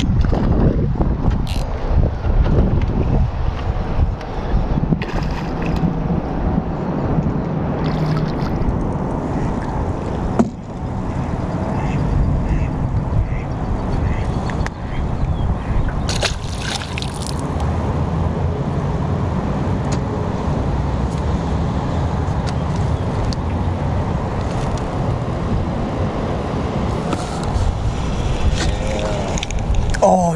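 Wind rumbling on the microphone over sloshing water, with a short splash about sixteen seconds in as a hooked panfish thrashes at the surface.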